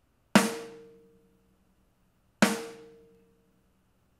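A recorded snare drum hit twice, about two seconds apart, played back with no compression. Each hit is a sharp crack followed by a ringing tone that fades over about a second.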